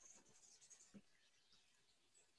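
Near silence: room tone from a video-call microphone, with a few very faint soft clicks, the clearest about a second in.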